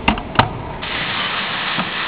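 Two sharp clicks from the metal latch handle on a gasification boiler's firebox door as it is turned, then a steady hiss from about a second in.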